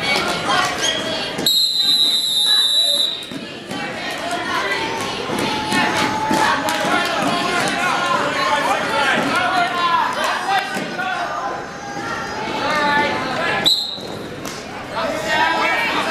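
Referee's whistle: one long, steady high blast about a second and a half in, and a short blast of the same pitch near the end, over crowd chatter in a gym.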